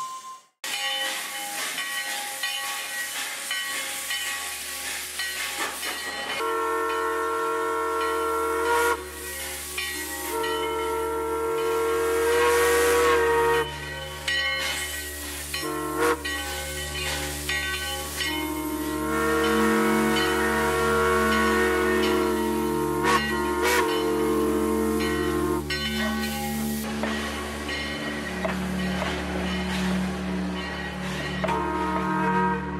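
Steam locomotive hissing steam over a low running rumble. Its steam whistle sounds several long blasts, each a chord of steady tones lasting a few seconds.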